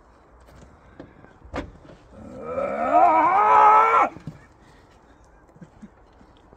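A man's long, drawn-out roar, rising and wavering in pitch for about two seconds, in horror-monster style; a single sharp knock comes just before it.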